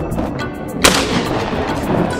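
A single rifle shot about a second in, fired at a running wild boar, with a ringing tail of echo. It sounds over background electronic music.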